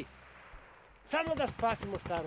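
A man's voice speaking, starting about a second in after a short quiet pause.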